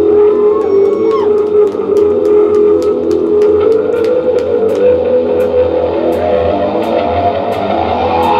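Live rock band playing: sustained, droning electric guitar chords over drums, with cymbal strikes recurring every half second to a second.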